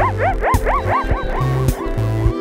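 Electronic music track: a pulsing synth bass line and beat under a fast run of yipping, dog-like calls that each rise and fall in pitch. The calls come about six or seven a second and thin out about one and a half seconds in.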